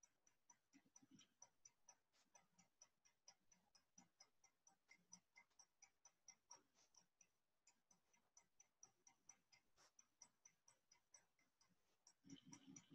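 Near silence with faint, rapid, regular ticking, about four ticks a second.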